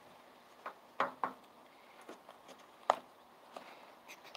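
Fingers and fingernails picking and tapping at a cardboard product box to get it open: a few sharp, separate clicks and scrapes, the loudest about one second in and near three seconds.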